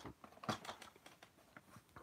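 Faint clicks and light rustles of plastic blister-card toy packages being handled and set down on a table, the sharpest click about half a second in.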